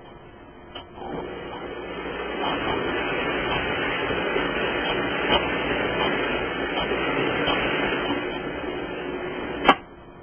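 Electric blender motor running, blending the sunflower and flax seed cheese mixture: it starts about a second in, builds to a steady load, then is switched off with a sharp click near the end.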